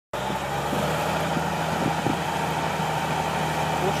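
Diesel engine of a large rubber-tracked tractor running at a steady, even note while it pulls a tillage implement across a field.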